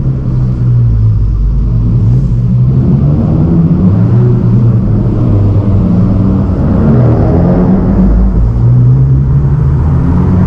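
Turbocharged four-cylinder engine of a 10th-generation Honda Civic Si running at low speed, heard from inside the cabin; its low hum swells a little in the middle with light throttle.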